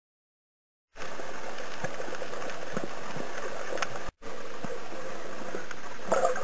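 Underwater ambience picked up by a camera held below the surface: a steady rushing hiss with scattered faint clicks. It starts about a second in after silence and drops out for a moment about four seconds in, at a cut between clips.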